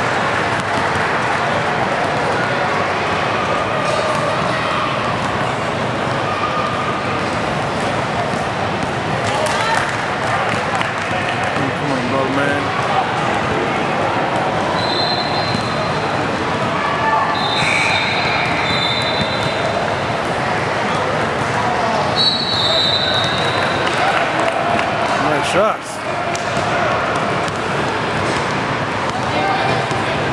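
A basketball bouncing on a hardwood gym floor among the indistinct chatter of spectators and players, with a few short high-pitched squeaks around the middle.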